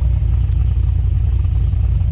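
Chevrolet SS's 6.2-litre LS3 V8 idling through its quad-tip exhaust, a loud, steady low rumble.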